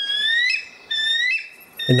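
Bald eagle calling: a series of about four thin, high whistled notes, each about half a second long, some rising in pitch, with a voice starting near the end.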